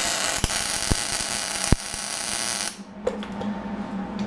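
MIG welder laying a tack weld on a chassis tube: the arc runs steadily for about two and a half seconds, then stops suddenly, followed by a few small clicks.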